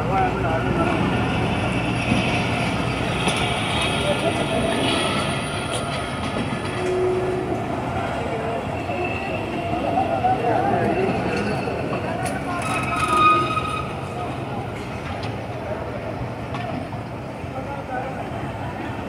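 Pakistan Railways passenger coaches rolling slowly past on the rails, a steady run of wheel and carriage noise with a louder moment about two-thirds of the way through. Voices are heard over it.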